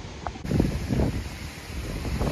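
Wind buffeting the microphone in uneven low rumbling gusts. About half a second in, the background changes abruptly.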